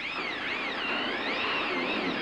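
Electric screw gun whining as it drives a screw into light-gauge steel framing plates, its pitch wavering up and down as the load changes.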